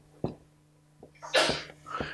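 Felt-tip marker writing numbers on a whiteboard: a few short taps, then one longer scratchy stroke about one and a half seconds in, over a faint steady electrical hum.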